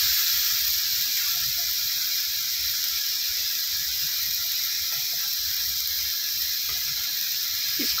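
Onion-tomato masala frying in oil in an iron kadhai, giving a steady, even sizzling hiss.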